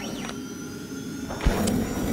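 Logo-animation sound effect: a noisy whooshing rush with a short pitch sweep near the start, then a sharp thump about one and a half seconds in, followed by a louder rush.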